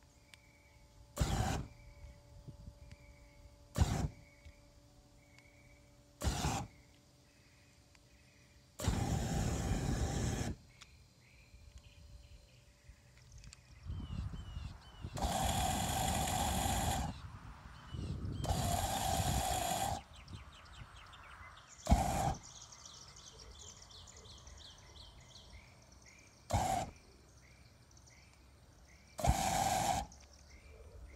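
Flamethrower exhaust on an air-cooled VW Beetle firing repeatedly: nine loud bursts of flame from the tailpipe, six short ones of about half a second and three longer ones of nearly two seconds. Faint birdsong between the bursts.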